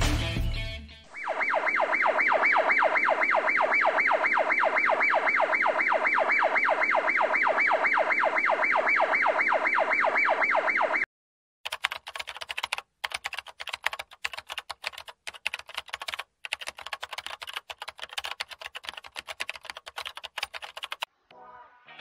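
Added sound effects: a steady electronic tone pulsing several times a second for about ten seconds, then cut off, followed by irregular runs of keyboard-typing clicks.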